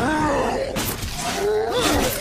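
Fight sound effects from an animated film: men's cries and grunts rising and falling in pitch, with sharp crashing hits about a second in and again near the end.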